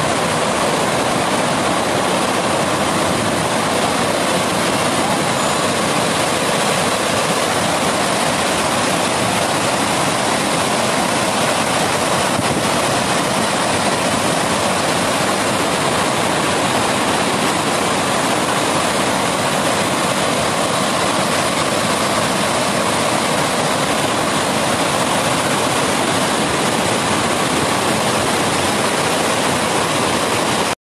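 Water pouring over a reservoir's concrete spillway and rushing down the channel below it, a loud, steady, unbroken rush of noise.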